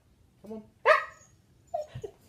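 A husky giving a sharp, loud bark about a second in, then a shorter, quieter one near the end, answering a command to sing for a treat.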